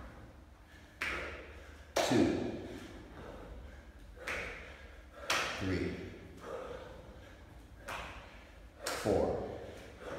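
Jumping burpees on a gym floor: sharp hand claps and thuds of the body dropping to the floor and the bare feet landing, in clusters every three to four seconds. Loud effortful breaths or grunts come with the impacts.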